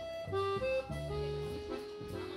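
Jazz accordion playing a melody with double bass underneath: a quick run of short notes in the first second, then a longer held note.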